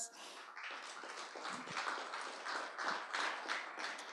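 Audience applauding: a dense patter of many hands clapping at once that carries on steadily and then tapers off.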